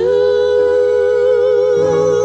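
Gospel worship music: a voice slides up into one long held note with a slight vibrato, over a soft sustained backing chord.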